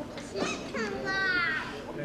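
Background chatter in a large room, with a child's high-pitched voice giving one drawn-out, slightly falling call about a second in.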